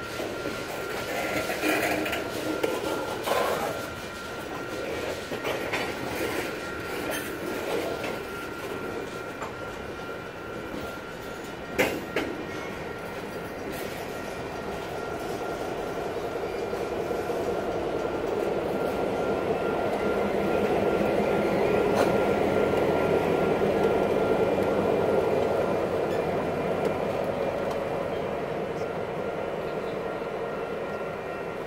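Freight train of tank cars rolling past close by: steady wheel and rail noise with a thin continuous squeal, and a single sharp click about twelve seconds in. In the second half a diesel locomotive's engine grows louder as it draws alongside.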